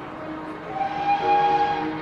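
Background music of long held notes that swells about a second in, with new notes entering one after another.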